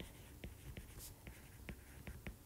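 Faint, quick taps and clicks of a stylus tip writing on a tablet's glass screen, a few small ticks each second as letters are written.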